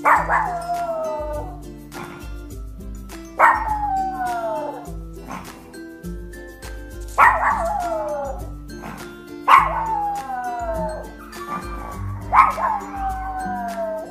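A Yorkshire terrier gives five howling barks a few seconds apart. Each starts sharply and slides down in pitch over about a second, over background music.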